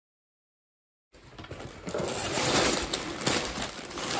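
Silence for about the first second, then a cardboard box being handled and plastic bags of LEGO bricks rustling, with the loose bricks rattling inside as the bags slide out of the box.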